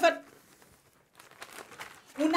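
Faint rustling and crinkling of paper as torn paper scraps are gathered up by hand, starting about a second in, after a woman's scolding voice trails off at the start.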